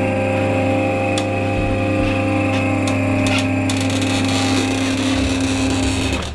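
Electric motor of a powered hi-lo chiropractic table running with a steady hum as it tilts the table back upright, with a few faint clicks; the motor stops near the end.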